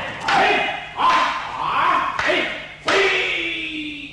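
Loud shouted kiai as two aikido practitioners strike wooden bokken together in a paired sword exercise (kumitachi), with several sharp knocks. The last shout is long and falls in pitch, fading near the end.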